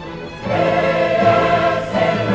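Choral music on the soundtrack: a choir singing long held chords, swelling loudly about half a second in.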